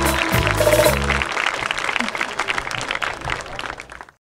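A live band with drums finishes a Bollywood song about a second in, and audience applause follows, fading out near the end.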